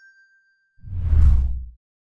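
Logo-animation sound effects: a bright electronic ding rings out and fades away. About a second in comes a short, deep whoosh with a low boom, the loudest part, which stops suddenly after under a second.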